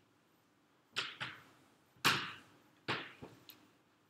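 Five or six sharp knocks spread over about three seconds, the loudest about two seconds in.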